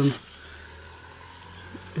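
A man's voice ends a word, then a pause of about a second and a half with only faint, steady outdoor background hiss, and the speech starts again at the end.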